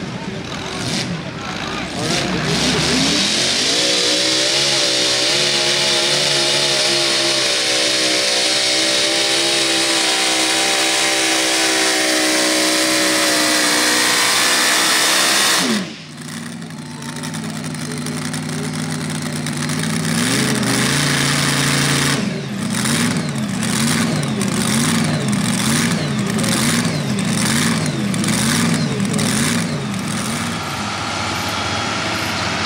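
Supercharged engine of a Mini Rod pulling tractor revving up from idle and running flat out for about thirteen seconds during a pull. The sound drops off suddenly, and the engine is then heard idling roughly with one short rev.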